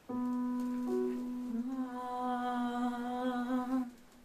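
A man humming one long held note that wavers slightly in its second half and stops just before the end.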